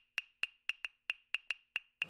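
A steady run of faint, light ticks, about four a second, each with a short high ping.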